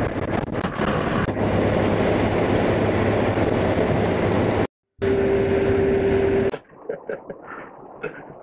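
Road and wind noise of a moving minibus heard from inside, with a low engine hum underneath. About two-thirds through, the sound breaks off briefly, returns duller with a steady whine, then stops and gives way to quieter scattered clicks near the end.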